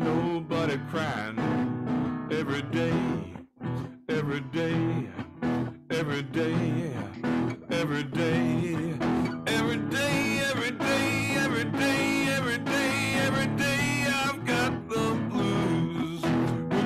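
Acoustic guitar strummed in a blues rhythm, with a man singing over it; the playing breaks off briefly about three and a half seconds in.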